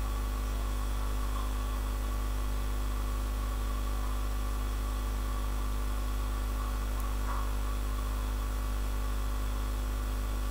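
Steady low electrical hum with a layer of hiss.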